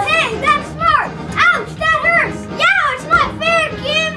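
Children's voices calling out short exclamations in quick succession, each rising and falling in pitch, over backing music.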